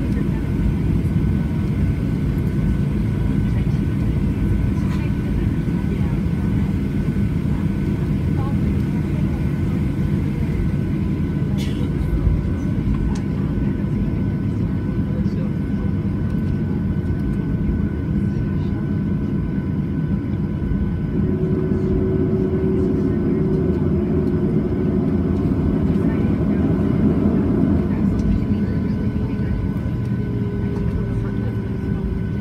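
Cabin noise inside a Boeing 737-700 taxiing on the ground: the steady low rumble of its CFM56-7 jet engines at taxi power, with two constant whining tones over it. A single click about twelve seconds in, and a humming tone that joins for several seconds near the end.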